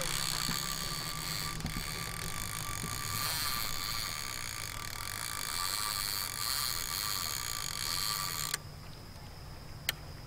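Fishing reel being cranked steadily as a line is retrieved, its gears whirring, stopping suddenly about eight and a half seconds in; a single sharp click follows near the end.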